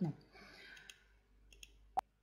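Faint computer mouse clicks, one a little under a second in and another about two-thirds of a second later.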